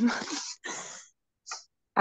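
Brief breathy laughter: two airy bursts in the first second and a short third about a second and a half in.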